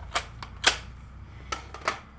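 Plastic clicks and snaps of a Nerf foam-dart blaster being handled: four sharp clicks, the second the loudest.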